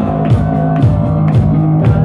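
Live rock band playing loudly without vocals: distorted electric guitars over a drum kit, with a steady beat of about two drum hits a second.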